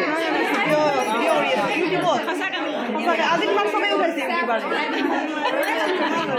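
Several women talking over one another in lively, overlapping conversation.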